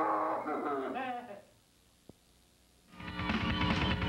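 A man's drawn-out yell through cupped hands, the pitch sliding up and down, for about a second and a half. After a short near-silence broken by one click at an edit, the loud live sound of a heavy metal band and club crowd cuts in about three seconds in.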